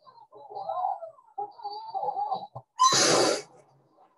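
Dashcam audio of a car crash: a faint wavering pitched sound, then a loud, sudden impact crash about three seconds in that dies away within half a second.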